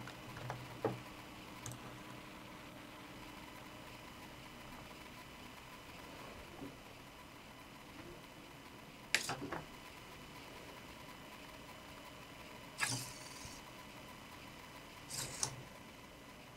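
Small hobby servo motors on a robot-leg prototype jerking between positions: a few short clatters several seconds apart over a faint steady hum.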